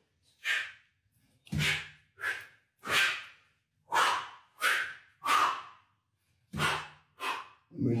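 Quick, forceful breaths in and out, about ten, one or two a second, from a man working a one-arm kettlebell long cycle (clean and jerk). This is the active breathing kept going throughout long-cycle lifting, rather than bracing and holding the breath.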